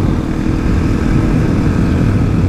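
Kawasaki KLX250SF's single-cylinder engine running steadily while riding at cruising speed, mixed with wind rush on the helmet-mounted camera's microphone. The sound holds an even level throughout.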